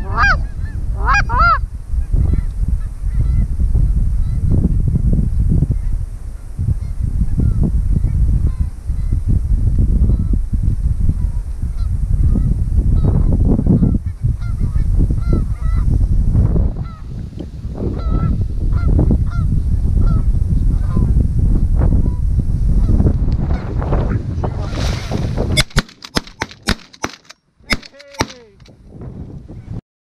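Goose honks repeating over heavy wind rumble on the microphone, the honks loudest in the first couple of seconds. About 26 seconds in the wind noise drops away, leaving a few sharp clicks.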